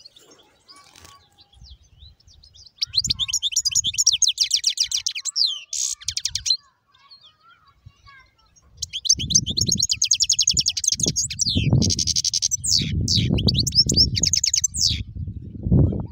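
Caged finch singing: two long phrases of fast, high trills and twitters, the first starting about three seconds in and the second running from about nine seconds until near the end. A low rumbling noise sits under the second phrase.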